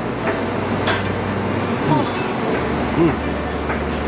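People eating, with a few short closed-mouth 'mm' sounds of enjoyment in the second half, over a steady low hum of kitchen equipment. A single sharp click about a second in.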